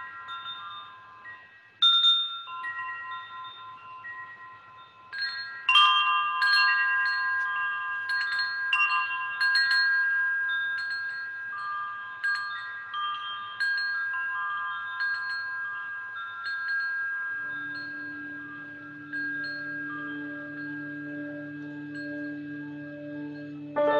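Wind chimes ringing: several high tuned tones struck at irregular moments, each left to ring out, with a louder cluster of strikes about six seconds in. A low steady tone comes in under them about three-quarters of the way through.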